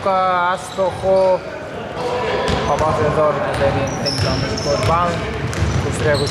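Game sounds on an indoor hardwood basketball court: a ball bouncing in short knocks, with brief sneaker squeaks about four seconds in. Voices call out over it.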